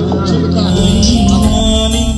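Live band music played through a PA system: sustained electronic keyboard chords over a steady hand-drum and percussion beat, with a brief gliding melodic line early on.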